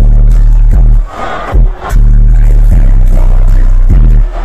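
Loud live hip-hop music through a concert sound system, with a heavy sustained bass line. The bass drops out for about a second near the middle, then comes back in at full level.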